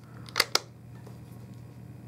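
Two quick clicks from the brass clasp of a small lacquered wooden slide box being handled shut, about half a second in, over a faint steady low hum.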